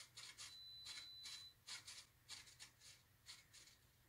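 Faint, quick whirs of the RC plane's small servos, a dozen or so short movements as the control surfaces are worked from the transmitter sticks, with a thin steady high whine for about a second near the start.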